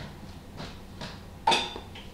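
Plastic Blu-ray cases being handled, with soft rustles and then a sharp plastic clack about one and a half seconds in, the loudest sound.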